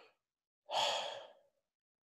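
A man's audible sigh, one breathy exhale of about half a second a little under a second in, with a fainter breath at the start.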